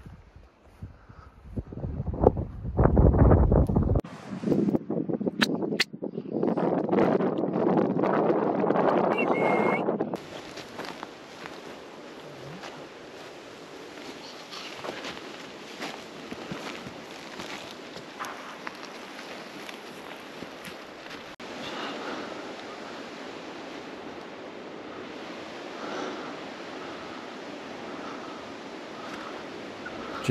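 Wind buffeting the microphone, loud for about the first ten seconds. It then drops to a steady quieter hiss with light crunches and brushing from footsteps through dry tussock grass.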